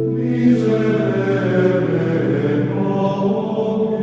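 Background music: slow choral singing in long held notes, like sacred chant, with the chord changing about a second in and again near the end.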